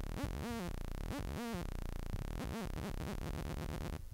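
Serum software synthesizer playing a sawtooth note modulated by a tempo-synced LFO. It makes repeating swoops, about one a second at first, then much faster as the LFO rate is changed. The note cuts off suddenly at the end.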